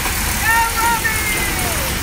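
Small steel kiddie roller coaster train rolling down its track with a steady rumble. About half a second in, two short high-pitched squeals from riding children are followed by a longer high cry.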